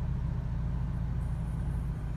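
Steady low hum of a 2013 BMW X3's 2.0-litre four-cylinder turbo engine idling, heard from inside the cabin.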